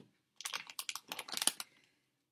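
Plastic M&M's candy bag crinkling as it is grabbed and lifted, a quick run of crackles lasting about a second.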